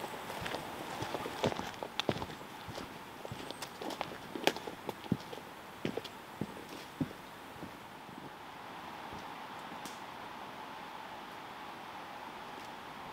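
Footsteps of a person in boots walking on a dirt and grass forest trail, an irregular run of crunching steps that stops about seven seconds in, leaving only a steady faint hiss.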